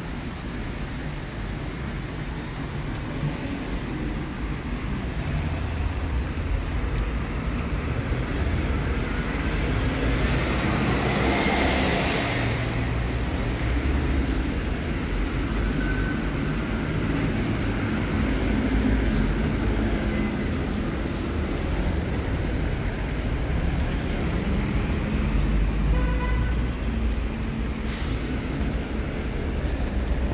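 City street traffic on wet roads: a steady rumble of cars and buses, with one vehicle passing loudest about twelve seconds in.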